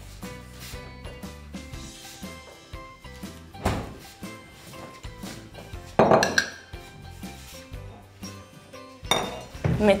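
A glass milk bottle set down hard on a kitchen counter with a sharp clink about six seconds in, after a softer knock a couple of seconds earlier, over soft background music.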